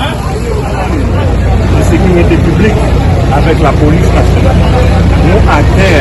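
Several people talking over one another in a crowd, with a steady low rumble of outdoor traffic and engines underneath.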